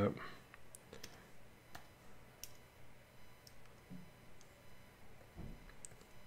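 A handful of faint, irregularly spaced clicks from computer input devices used during digital sculpting.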